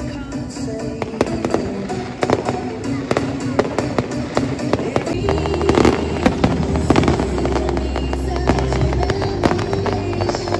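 Aerial fireworks shells bursting and crackling in quick succession over music. The bangs come thicker and louder about halfway through, as a deep bass note enters the music.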